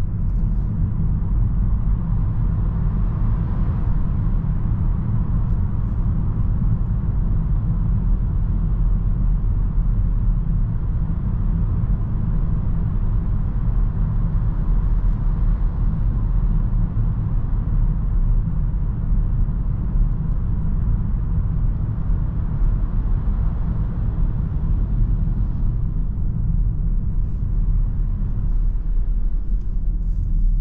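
Cabin noise of a 2023 Citroen C5 Aircross cruising at steady speed: a constant low drone of tyre and road noise together with its 1.2-litre inline three-cylinder petrol engine, heard from inside the car.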